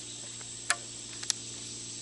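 A rubber band snapping twice against a cardboard tube as it is stretched and wrapped around it: two short sharp snaps about half a second apart, the first louder.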